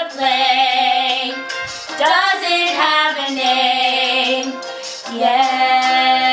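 Two women singing a duet, in three phrases that end in long held notes with vibrato.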